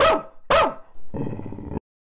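Senior staffy mix dog barking twice, each bark falling in pitch, about half a second apart, followed by a short, rougher, noisier sound that cuts off suddenly.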